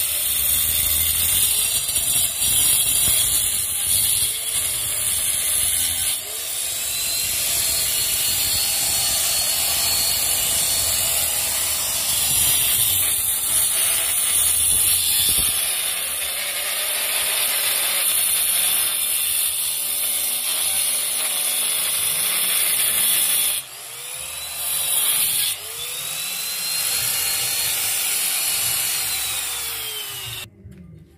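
Handheld electric angle grinder with a cutting disc cutting a chase into a brick wall: a loud, continuous gritty whine of the disc in the brick. It goes briefly quieter twice near the end before cutting on.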